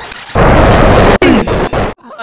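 Extremely loud, heavily distorted and clipped audio: a harsh wall of noise with almost no pitch left in it, typical of an ear-rape effect edit. It starts about a third of a second in, breaks off for a moment about halfway, and cuts off sharply just before the end.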